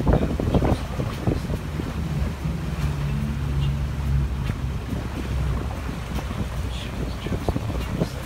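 A boat's engine running with a steady low hum, under wind buffeting the microphone and water rushing past the hull. The wind buffeting is heaviest in the first second.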